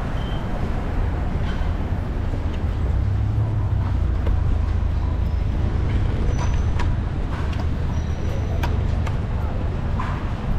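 City street ambience: a steady low rumble of road traffic, with scattered short clicks and a few faint brief high tones over it.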